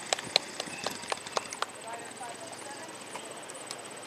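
A horse's hoofbeats at a walk: a run of sharp clops about four a second, stopping about halfway through.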